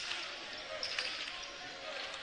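A basketball being dribbled on a hardwood court, a few separate bounces, over the steady murmur of an arena crowd.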